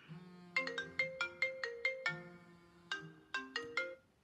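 An iPhone's ringtone playing for an incoming call: a melody of short chiming notes in two phrases, with a break near the middle. The phone is ringing with nothing shielding it.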